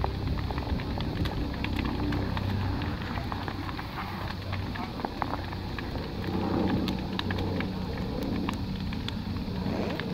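Large open bonfire burning, crackling with many sharp pops over a low steady rumble.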